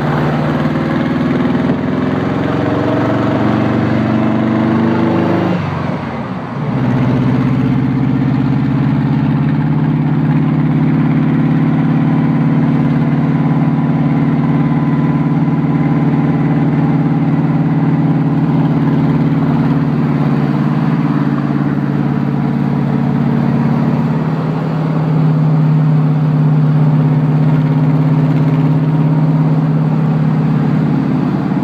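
Car engine and road noise heard from inside the cabin. The engine note rises as the car accelerates for about five seconds, dips briefly around six seconds in as it changes gear, then settles into a steady drone at cruising speed.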